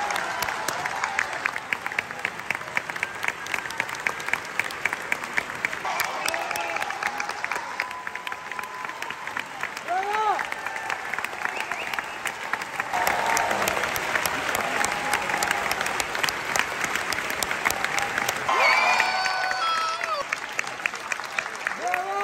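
Opera audience applauding at the curtain call: dense, steady clapping from a full house, with voices calling out now and then, most clearly about ten and nineteen seconds in.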